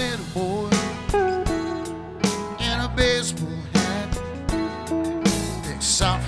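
Live band playing an instrumental passage with drum kit, bass, keyboards and guitars, a guitar carrying a melodic lead line. The full band comes in together with a drum hit at the very start.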